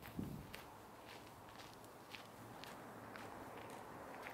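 Footsteps walking at a steady pace on a dirt and gravel path, faint, about two steps a second. A brief low falling sound comes just after the start and is the loudest moment.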